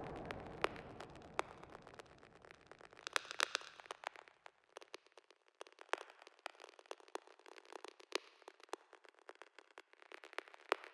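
Faint crackle with scattered sharp clicks, like a worn record's surface noise, laid over the credits as a sound effect. A noisy swell fades out over the first four seconds, leaving the thin crackle on its own.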